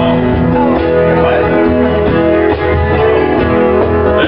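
A live band's guitars, acoustic and electric, play a country-style instrumental passage with a steady strummed rhythm.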